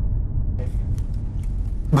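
A low, steady rumble.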